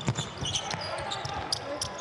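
Basketball being dribbled on a hardwood court, several sharp bounces spread through the moment.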